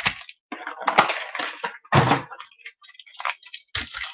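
A blaster box of football trading cards being ripped open by hand: irregular tearing and crinkling of the packaging, with a sharp crack about a second in and a louder rip about two seconds in.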